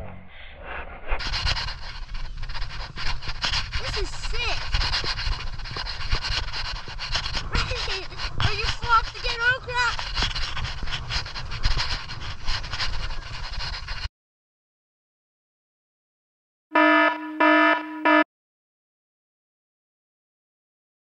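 Rough wind and snow noise against a skier's camera, with many knocks and scrapes and faint voices, cutting off abruptly. After a gap of silence come three short electronic beeps in quick succession.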